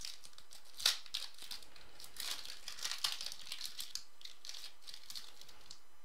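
Shiny foil wrapper of a football trading-card pack crinkling and rustling as the stack of cards is pulled out and handled, with one sharp crackle about a second in; the rustling quietens near the end.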